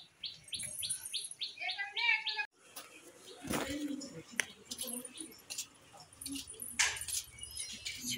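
A small bird chirping repeatedly, about four short high chirps a second, then a brief wavering call. After a sudden cut about two and a half seconds in come scattered clicks, knocks and rustling.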